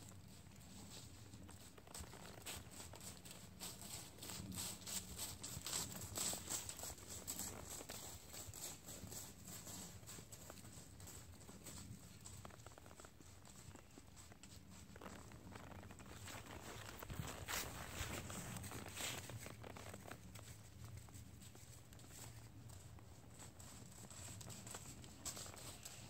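Faint hoofbeats of a Tennessee Walking Horse walking over dry fallen leaves, each step rustling and crunching through the leaf litter; the steps grow louder twice, about a quarter of the way in and again past the middle.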